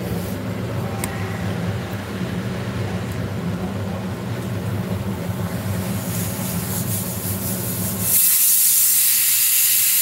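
Aluminium pressure cooker on a gas stove letting off steam through its weight valve: a loud hiss, the cooker's whistle, breaks in suddenly about eight seconds in, after a steady low rumble. The whistle signals that the cooker has come up to pressure.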